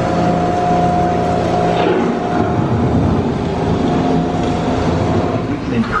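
Steady droning hum with a few held tones, the background sound aboard an indoor theme-park boat ride. The tones fade out near the end as a recorded narrator's voice begins.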